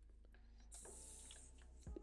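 Near silence: room tone with a faint steady mains hum, a brief soft hiss about a second in and a soft tap just before the end.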